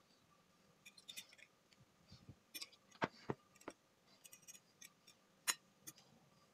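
Metal fork clinking and tapping against a ceramic plate and a glass dish while moving small soaked foam cubes: a scatter of light irregular clicks, the sharpest about three seconds in and again about five and a half seconds in.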